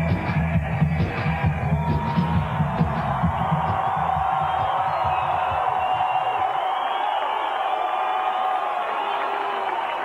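Loud dance music with a heavy beat playing over a large cheering crowd. About halfway through, the beat drops away and the crowd's cheering carries on alone.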